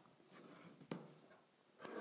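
Near silence in a small room, with one faint click about a second in.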